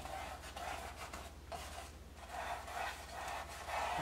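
Small brush dragging ultramarine blue oil paint across a stretched canvas, a few soft scratchy strokes.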